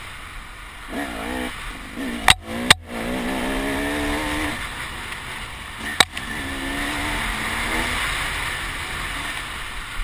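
Enduro dirt bike engine working up and down through short throttle blips on a tight trail, heard from the rider's helmet camera with wind rush. Three sharp loud knocks cut through it, two close together a little over two seconds in and one more about six seconds in.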